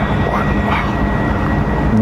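A steady mechanical hum over a rushing noise with a low rumble, holding level throughout.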